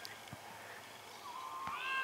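Young football players' voices: a high, drawn-out shout starts about a second and a half in and swells toward louder shouting, over a quiet stretch with two soft thuds.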